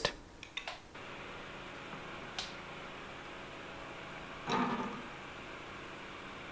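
Light clicks and taps of a plastic heat-gun holder being handled and set against the rework station's case, with one short louder rustle later, over a steady faint hiss.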